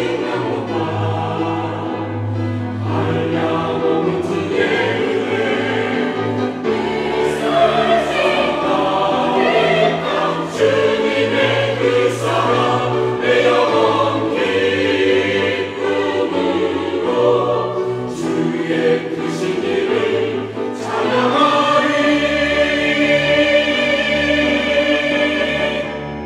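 Mixed church choir singing a Korean sacred anthem in harmony, sustained and full throughout.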